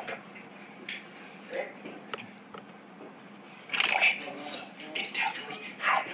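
A quiet stretch with a few faint clicks, then a person's voice starting a little past the middle, breathy with strong hissing sounds.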